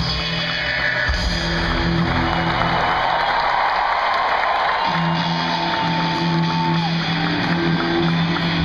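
Live rock band with electric guitar and bass playing in a stadium, heard from the stands. Around the middle the bass drops out for a couple of seconds while a long held high note carries through, then slides down a little before seven seconds as the band comes back in.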